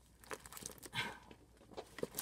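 Faint crinkling and rustling of a large, stiff sheet being bent and handled, in a few short scattered strokes with a small cluster about a second in.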